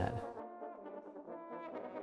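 A French horn quartet playing softly in held, sustained notes.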